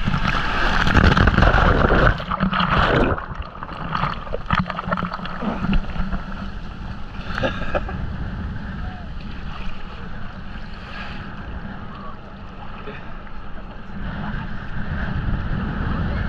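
Sea surf heard from a camera held at the waterline: a breaking wave rushes and foams past for the first two to three seconds, then water sloshes and splashes against the camera.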